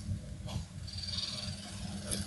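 Low steady hum in the recording, with a single faint click about half a second in and a soft hiss a little later.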